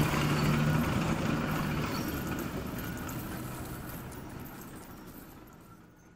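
A heap of coins sliding and jingling as a digger bucket scoops through them, over a steady low machine hum. It starts suddenly and fades out slowly over about six seconds.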